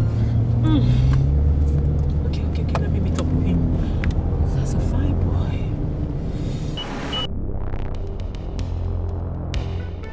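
Low, steady rumble of a car driving, heard inside the cabin, under a woman's voice and background music.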